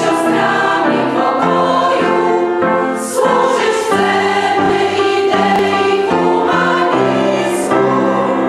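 Women's choir singing in several parts, holding chords that change roughly once a second, with crisp sibilant consonants.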